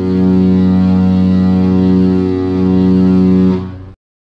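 A cruise ship's horn sounding one long, deep, steady blast that fades out shortly before the end.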